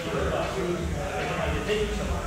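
Indistinct, unintelligible voice sounds with wavering pitch over a steady low rumble, with no clear impacts.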